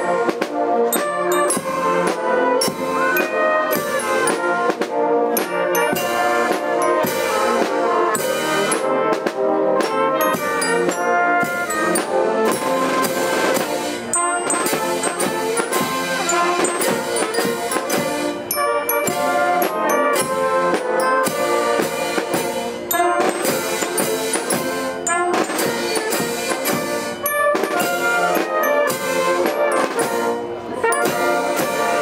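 Wind band playing a processional march: trumpets and trombones carry the melody over drums and cymbal strokes.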